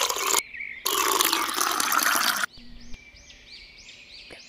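Juice pouring from a glass pitcher into a tall glass, in two pours with a short break, cutting off sharply about two and a half seconds in. Faint high chirps follow.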